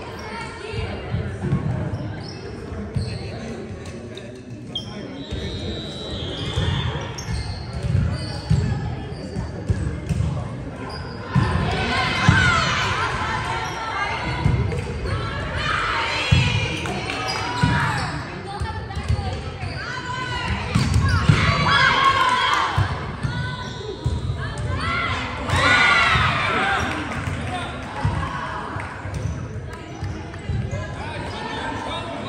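Indoor volleyball rally: repeated thuds of the ball being served, hit and bouncing on the hardwood court, echoing in a large gym. Players' high voices call out in bursts, louder from about twelve seconds in.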